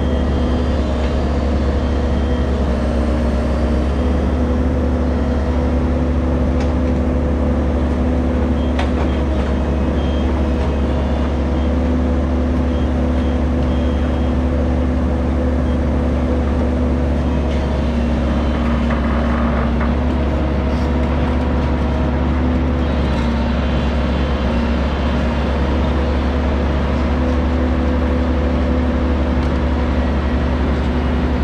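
Compact crawler excavator's diesel engine running steadily under working load while the hydraulic boom and bucket dig into sand; the drone shifts slightly in pitch now and then, with a few light knocks.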